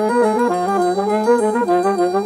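Several reed horns played at once by one player in a jazz medley: a held low note under a melody line that moves note by note in harmony.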